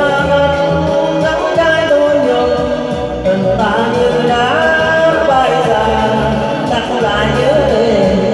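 A man singing a Vietnamese song into a microphone through a PA, holding long notes with vibrato over a backing band.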